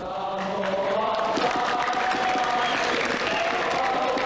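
A large group of schoolboys singing together in unison, with hand clapping. It fades in over the first second, then holds steady.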